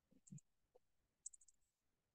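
Near silence with a few faint clicks, one pair about a third of a second in and a short cluster just over a second in, from a computer mouse and keyboard being worked.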